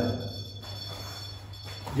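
A pause in the talk filled by a steady low hum and thin, steady high-pitched electronic whines, with no knocks or other sudden sounds.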